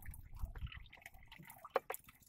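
Faint water lapping against the side of a small wooden boat, with a few scattered soft clicks.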